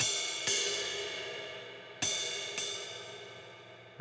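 Jazz ride cymbal struck twice with a wooden drumstick, about two seconds apart. Each stroke is followed about half a second later by a lighter second hit as the thrown stick rebounds off the cymbal on its own, and the cymbal rings on and fades between strokes.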